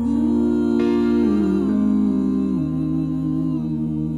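Voices humming wordless sustained chords in close harmony, the parts moving note by note, over a steady low bass note.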